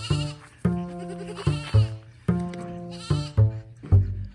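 Background music with a steady plucked beat, over which cashmere goat kids bleat about three times.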